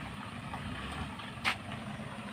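A van's engine idling steadily with a low rumble, and one short sharp click about one and a half seconds in.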